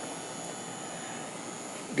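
A steady, even background noise with a faint high whine, and no distinct knock or click.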